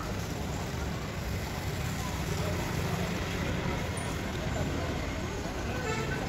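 Outdoor background noise: a steady low rumble with faint, indistinct voices in the distance.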